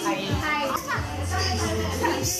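Several young people's voices talking over each other, over background music with a steady low bass.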